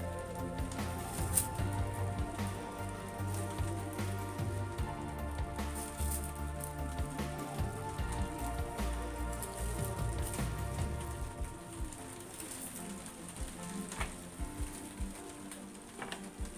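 Background music with a bass line, over the crinkling of a thin clear plastic bag as a knife is drawn out of it.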